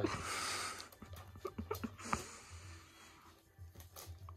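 Small dog nosing and tearing at a wrapped present, the wrapping paper rustling and crinkling. There is a loud burst of rustling in the first second, a softer stretch about two seconds in, and small crinkles in between.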